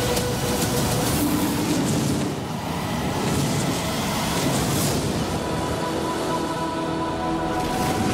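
Film-trailer sound mix: a dense, continuous rushing rumble of effects with held music tones over it, and a brighter surge of noise near the end.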